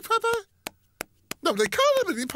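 Cartoon penguin voices babbling in made-up gibberish, broken by a pause holding three short, sharp knocks about a third of a second apart.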